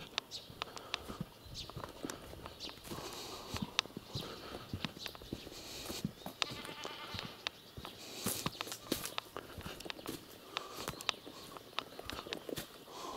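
Footsteps and small knocks of someone walking over dry grass, with a goat bleating once, about a second long, roughly six seconds in.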